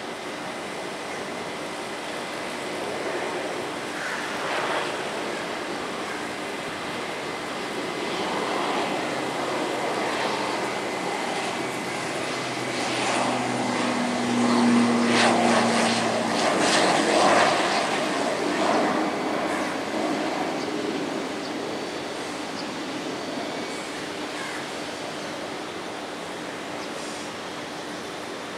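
Beechcraft King Air 350 (B300) twin turboprop on approach and landing, its two Pratt & Whitney PT6A-60A turboprops and propellers droning steadily. The drone grows louder to a peak about halfway through as the aircraft passes close by, with a brief low hum in it, then eases off as it settles onto the runway.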